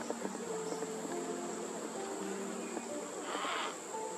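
A steady high-pitched insect drone throughout. About three and a half seconds in comes a short rasping cry, the begging call of a yellow-tailed black cockatoo chick.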